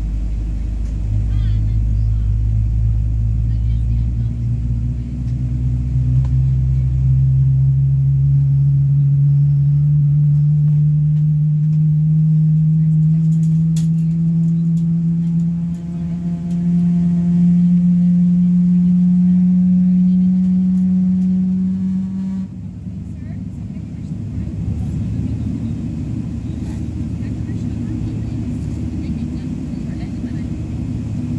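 Jet airliner heard from inside the cabin while it taxis: a steady low rumble, with a whine that climbs slowly in pitch over about eighteen seconds and cuts off suddenly, after which the rumble carries on.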